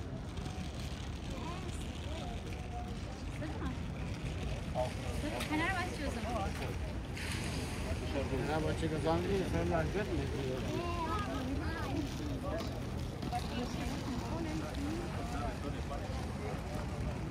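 Voices of passers-by chatting, several at once and clearest around the middle, over a steady low rumble.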